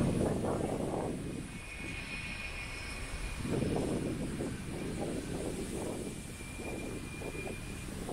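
Outdoor street ambience: a low rushing noise that swells and fades, loudest at the start and again about halfway through, with a faint steady high whine running through most of it.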